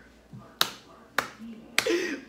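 Three sharp clicks made by a person's hands, evenly spaced about half a second apart, each cutting off quickly.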